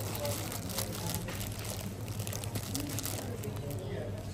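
Indistinct background voices over a steady low hum and a continuous rustling hiss that eases off near the end.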